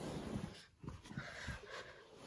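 Faint, soft rustling and scuffing of plush stuffed toys being scooped up and handled.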